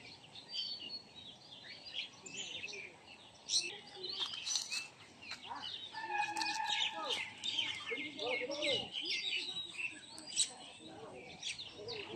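Many small birds chirping and calling together, with short high chirps overlapping throughout. Two brief, sharper, louder sounds stand out, one about three and a half seconds in and one near the end.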